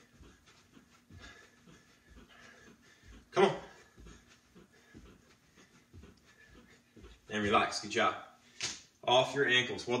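A man breathing hard and vocalising with effort, over quick, faint thuds of his socked feet landing on carpet as he jumps his feet out and in against a resistance band looped around his ankles. The loudest vocal sounds come once about three seconds in and again in the last three seconds.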